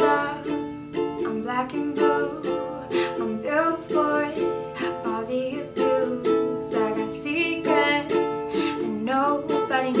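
Ukulele strummed in steady chords while a woman sings the melody over it.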